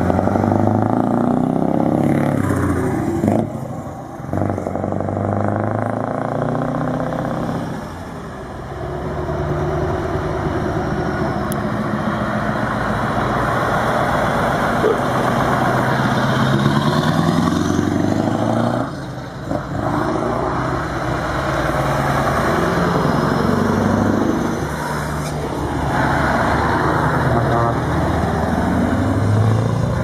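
Scania V8 truck engines accelerating past. The engine note climbs again and again through the gears, with short drops in level between pulls.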